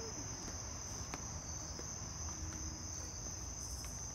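Crickets chirping in a steady, unbroken high-pitched trill, with a single faint click about a second in.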